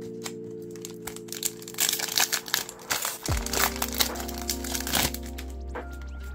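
Trading card booster pack wrapper being torn open and crinkled, with a dense flurry of crackles about two to three seconds in. Background music with held notes plays underneath, and a bass line comes in about three seconds in.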